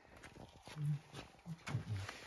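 Framed pictures and wooden antique furniture being handled and shifted, giving a scatter of light knocks and clatter, with a few short low-pitched sounds, the loudest about a second in and another near the end.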